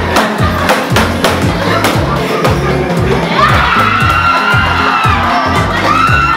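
Music with a steady bass beat under a crowd cheering and shouting, with sharp clap-like strikes. Over it, one long high-pitched call is held from about three and a half seconds to five.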